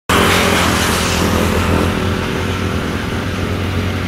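An engine running steadily with a low hum. A louder rush of noise over it eases off over the first two seconds.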